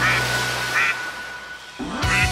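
Two short duck quacks, about three-quarters of a second apart, over background music that thins out and dips near the end.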